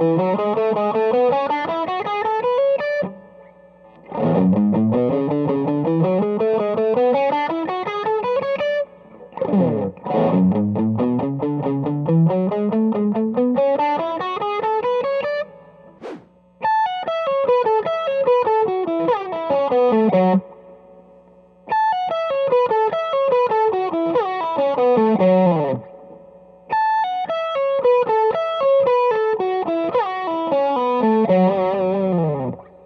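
Electric guitar, a Telecaster-style solid-body, playing fast triplet runs in F# minor: a rising run played three times with short pauses between. About halfway through, a falling F# minor pentatonic run starts high on the neck and is played three times.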